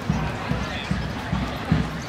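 Footsteps of someone walking briskly with the camera, heard as low thuds a little more than twice a second.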